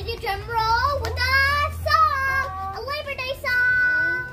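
Children singing a song together in phrases of gliding pitch, holding one long note near the end.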